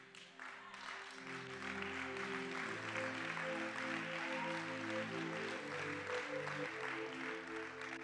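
Church keyboard playing soft held chords that change slowly, under a congregation applauding.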